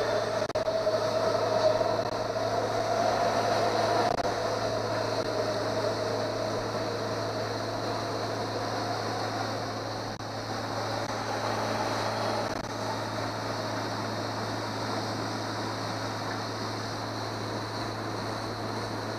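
Small motorboat's outboard motor running steadily under way, with water and wind noise. A Metro train crossing the bridge overhead adds a higher hum that fades out about twelve seconds in.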